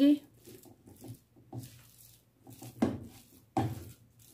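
Silicone spatula stirring and scraping a thick, sticky date-and-nut mixture around a nonstick frying pan, in a series of irregular strokes, the loudest about three seconds in and near the end.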